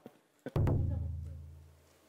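A single low, drum-like booming hit, an edited-in sound effect, comes in about half a second in and fades away over about a second and a half.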